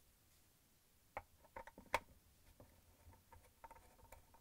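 Faint, scattered small clicks and taps of hands handling the plastic pump parts of a dishwasher, the strongest about two seconds in.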